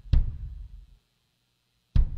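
Rock band's drum kit and bass guitar playing a stop-start accent: one sharp hit that dies away in about a second, then full silence until the next hit near the end.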